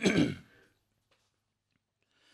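A man briefly clears his throat once, with a falling pitch, at the very start.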